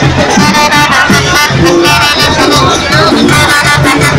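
Loud live brass-band music with a tuba, a steady pulsing bass line under held melody notes, heard in the middle of a dense street crowd.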